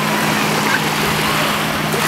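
Motorboats running on a lake: a steady low engine drone under a loud, even wash of waves and water noise.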